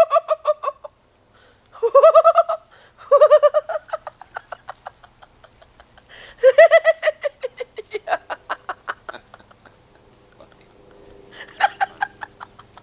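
A woman in an ice bath crying out in the cold, four times over: each a high, rising-then-falling shriek that breaks into a run of short laughs that fade away, with a weaker one near the end.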